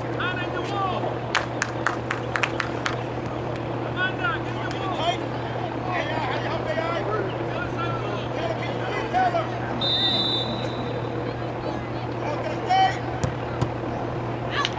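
Spectators talking and calling out at a soccer game, scattered voices over a steady low hum, with a few sharp clicks early on and a short high whistle about ten seconds in.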